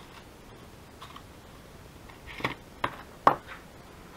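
Three short, sharp metallic clicks from jewelry pliers and a fine metal chain being handled on a craft mat, the last the loudest, after a few faint ticks.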